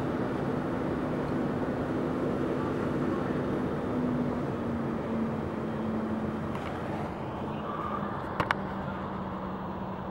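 Steady rushing noise with a vehicle engine's hum that drops a little in pitch about halfway through, around a burning transport truck being hosed down. Two sharp pops come near the end.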